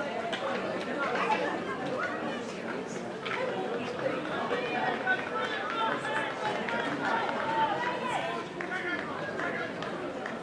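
Spectators chattering, several voices overlapping with no clear words.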